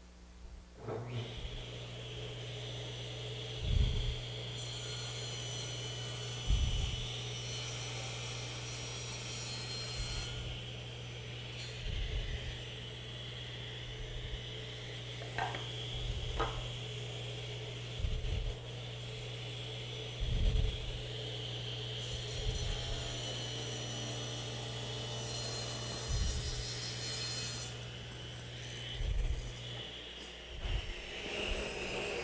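Table saw starting up about a second in and running steadily, with two crosscuts through a wooden board, each lasting about five seconds, where the cutting noise rises over the motor hum. A few dull knocks come between, and the saw is switched off near the end.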